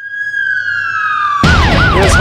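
A long siren tone slides slowly downward. About a second and a half in, a loud police car siren cuts in with a fast yelping up-and-down wail over a heavy low rumble.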